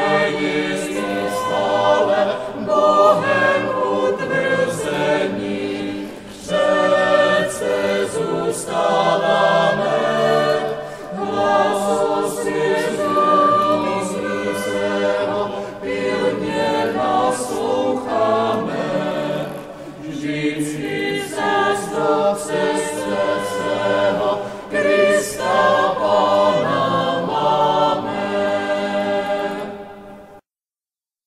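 A mixed choir singing a hymn in long, sustained phrases, with short breaks for breath about six and twenty seconds in.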